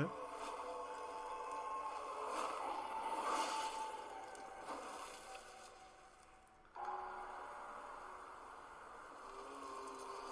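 Anime trailer soundtrack playing faintly: sustained droning tones that swell about two to four seconds in, fade away, then cut suddenly to a new, quieter drone a little before halfway.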